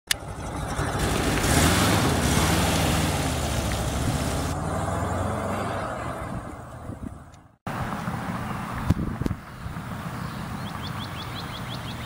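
A 1978 Volkswagen Type 2 bus's air-cooled flat-four engine runs as the bus drives off, loud at first and fading over several seconds. After a sudden break, quieter road noise follows, with a couple of thumps and a short run of faint high chirps near the end.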